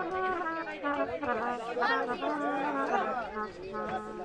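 Several voices talking over one another in a low chatter, with faint steady held notes from a harmonium underneath.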